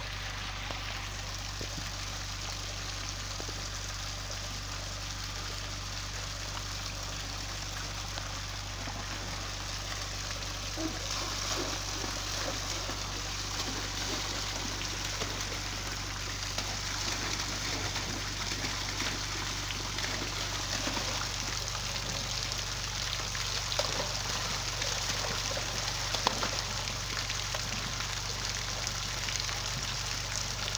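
Water spraying steadily from the holes of a perforated PVC inflow pipe and splashing onto a pond's surface, an even rushing like rain. From about ten seconds in, irregular splashing and sloshing of water and fish in a plastic basin joins it, with a couple of sharper splashes near the end.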